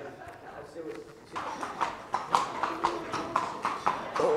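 A horse's hooves clip-clopping at a walk, a steady run of strikes about four a second that starts about a second in, as the horse steps off the arena sand onto the hard floor of the stable aisle.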